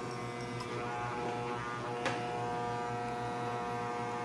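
Corded electric hair clipper running with a steady buzz that does not drop out while its cord is moved. The intermittent power cut caused by a broken wire in the cord has been repaired by splicing. There is one light click about halfway through.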